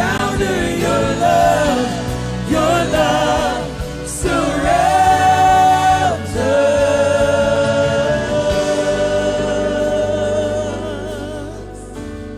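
Live worship band playing a song: voices singing over electric and acoustic guitars, with two long held sung notes in the middle. The music gets quieter near the end.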